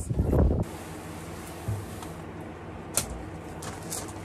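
Metal halide grow light's ballast giving a low, steady mains hum, with a single sharp click about three seconds in.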